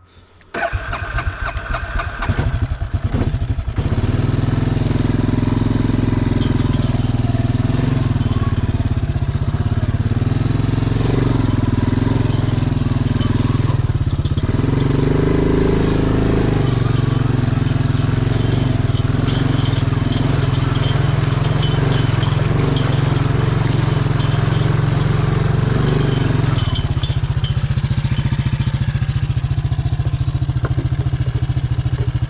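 Honda TRX ATV single-cylinder engine cranked by its starter for about three seconds, then catching and running at varying revs, rising about halfway through and settling lower near the end.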